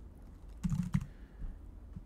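Computer keyboard typing: a quick run of several keystrokes about two thirds of a second in.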